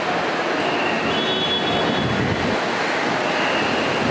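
Steady, dense noise of a busy airport terminal entrance, with a few faint, thin high squeals partway through.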